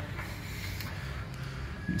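Faint steady background hum with a few soft clicks and creaks, from handling under the car.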